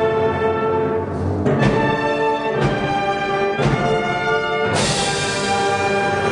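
Concert wind band playing held full chords, punctuated by drum strikes about once a second. A bright cymbal crash comes near the end.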